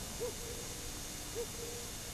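Two faint, short hooting calls of a night bird, about a second apart, over a low steady hiss.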